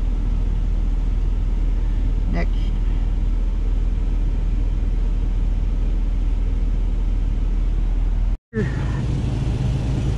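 Semi-truck diesel engine idling, heard from inside the cab as a steady low rumble, which drops out for an instant near the end.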